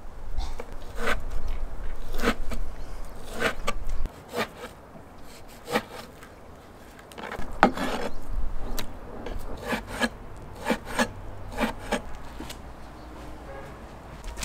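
Chinese cleaver slicing raw beef tenderloin into thin slices on a wooden cutting board: the blade drawing through the meat, each cut ending in a short knock on the board, roughly one a second.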